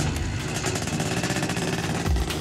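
Motorbike engine running steadily.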